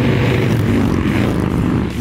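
A pack of cruiser motorcycles riding together at highway speed, their engines running in a steady drone.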